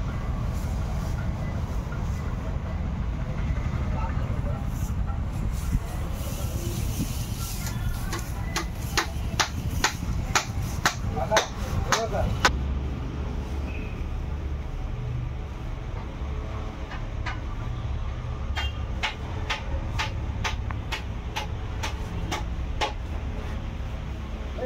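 Workshop noise: a steady low rumble, with two runs of sharp knocks at about two or three a second, one starting about a third of the way in and one near the end.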